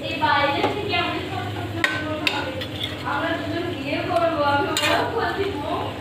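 A metal spatula stirring vegetable curry in a steel kadai, with three sharp clinks of the spatula against the pan, about two seconds in, a moment later, and near five seconds, under someone talking.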